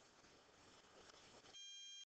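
Near silence with faint room hiss, then, about a second and a half in, a steady high beep lasting about half a second that cuts off abruptly.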